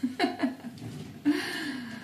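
A woman laughing briefly, then exclaiming 'oi' about a second in.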